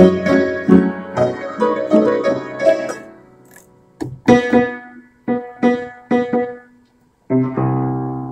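A 1940s upright piano being played: about three seconds of busy chords that die away, then a few separate chords struck one at a time, a short pause, and a new chord held near the end. The piano is out of tune.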